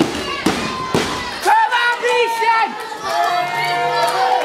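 Three sharp smacks about half a second apart from wrestlers fighting at ringside, then a crowd yelling, with many high children's voices.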